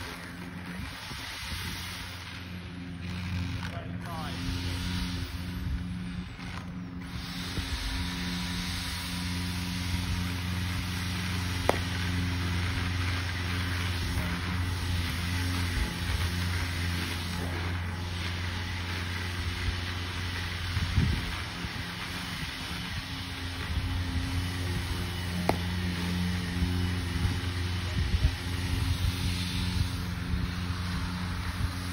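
A steady engine drone, a low hum with several even tones, runs throughout. A couple of sharp knocks stand out briefly, one near the middle and one past two-thirds through.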